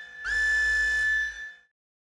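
A high, whistle-like tone from the end-card outro sound effect that glides up onto one held pitch, sustains for about a second and cuts off suddenly.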